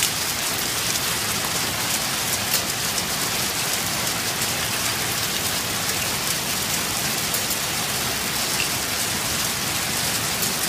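Heavy storm downpour pelting the ground and vehicles: a steady, dense hiss with many small sharp hits.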